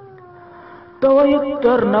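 A fading held tone, then a loud, quavering animal call at a steady pitch that starts suddenly about a second in.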